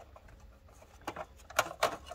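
A few short plastic clicks and scrapes in the second half as the VFD's detachable keypad is pried out of its housing.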